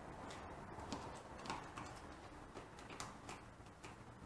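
Faint, irregular light ticks, roughly two or three a second at uneven spacing, over low room noise.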